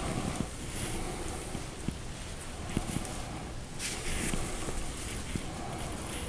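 Quiet handling sounds of hands wrapping a strip of raw bread dough around a filled meat patty: a few soft taps and a brief rustle about four seconds in, over steady room hiss.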